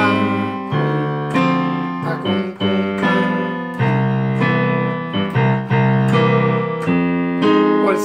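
Yamaha digital piano playing a steady chord accompaniment: one bass note in the left hand and two notes in the right, seventh chords without the fifth, a new chord struck about every second and left to sustain.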